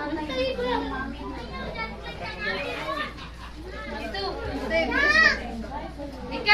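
Several adults and small children talking at once in a crowded room, with one child's high-pitched voice rising above the chatter about five seconds in.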